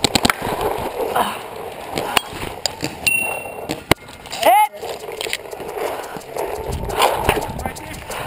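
Paintball marker firing a rapid string of shots, about ten a second, that stops just after the start, followed by scattered single pops and knocks while the player moves.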